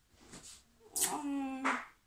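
A person's voice: one drawn-out, level-pitched syllable lasting under a second, starting about a second in, in the middle of a repeated sing-song chant.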